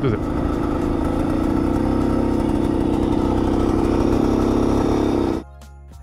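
Bultaco Alpina's single-cylinder two-stroke engine running steadily while the bike is ridden, making a horrible racket: a scraping noise from its broken chain tensioner. The engine sound cuts off abruptly near the end.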